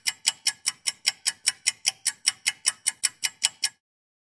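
A fast, even run of sharp ticks, about five a second, in the manner of a clock or metronome. It stops shortly before the end.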